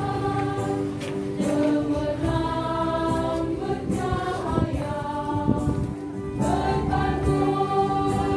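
A group of voices singing together, choir-style, in long held notes that change pitch every second or so.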